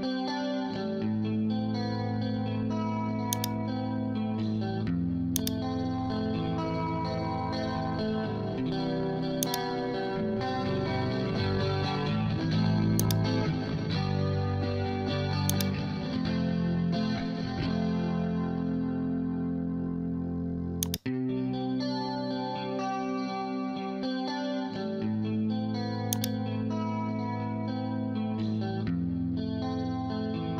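Clean electric guitar track playing sustained chords that change every few seconds, run through a compressor plugin whose attack time is being turned up from a very fast setting. The sound briefly cuts out once, about two-thirds of the way through.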